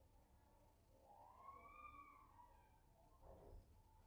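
Near silence: faint room tone with a low hum, and one faint tone that rises and then falls about a second in.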